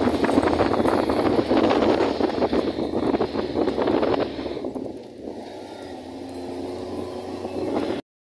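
Wind buffeting the phone's microphone in loud gusts that ease off about halfway through, leaving a fainter rush with a low steady hum underneath.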